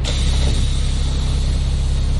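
A bus engine idling, a steady low drone with a faint high whine over it.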